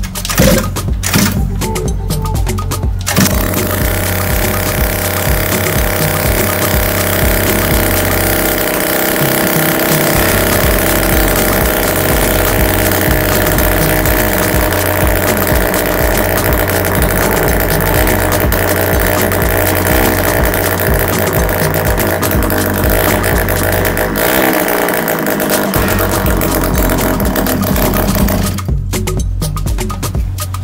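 Yamaha Jog scooter engine, freshly bored up from 50cc to 70cc, starting about three seconds in and then running at a steady level.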